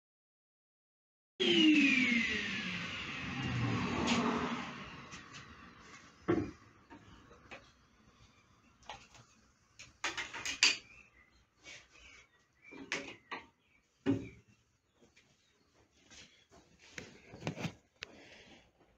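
The 12-inch planer-jointer's motor and helical cutter head spin down after being switched off, a falling whine that fades over a few seconds. After that come scattered knocks and clunks as the board and push block are handled on the machine's table.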